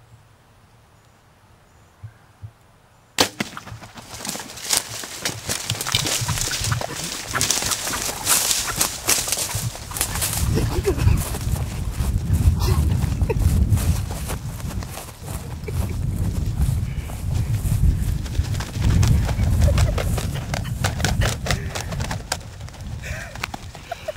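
A sharp snap about three seconds in, then a long stretch of rushing, buffeting noise from a camera carried at a run through a tall-grass field: footfalls, grass swishing and wind on the microphone, with many small knocks.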